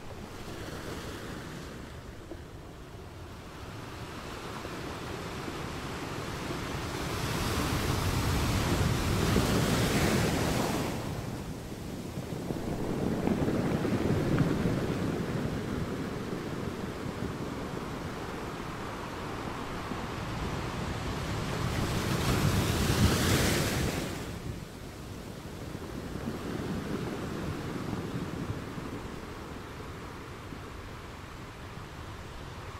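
Ocean surf: waves washing in and drawing back, swelling three times into louder breaks, about a third of the way in, near the middle and about three-quarters through.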